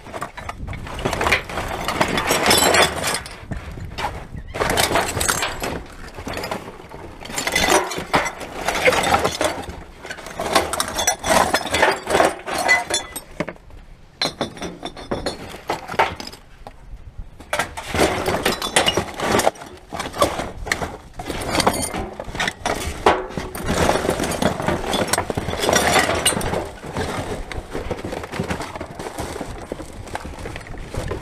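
Rubbish rustling and clinking as gloved hands dig through a steel drum bin, shifting plastic packaging, cardboard boxes and containers. It comes in bursts of a few seconds with short pauses.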